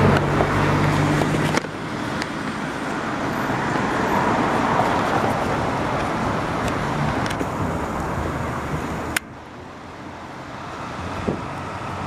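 Road traffic on the bridge, a steady rushing noise with a vehicle's low engine hum in the first second or so. The noise steps down suddenly about a second and a half in and again about nine seconds in.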